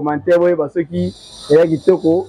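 A woman speaking in short phrases. From about a second in, a steady high-pitched chirring of crickets sets in behind her voice.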